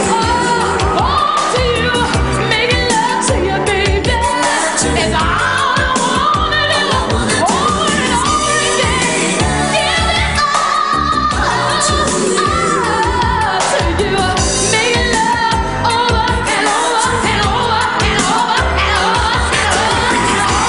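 Live pop song: a woman's lead vocal singing sliding runs over a band with a steady bass and drum beat, with backing singers on microphones.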